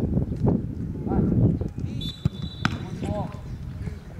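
A football being struck during goalkeeper training, with two sharp thuds a little past halfway, over voices calling out and a low outdoor rumble.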